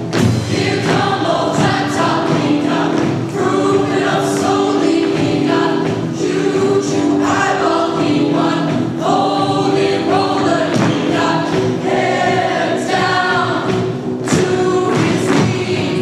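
Mixed-voice high school show choir singing in harmony.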